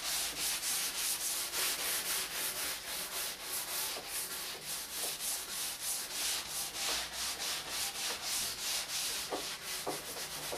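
Hand sanding the edge of a wooden table with a sanding block wrapped in wet-and-dry sandpaper, in quick back-and-forth strokes, about three to four a second.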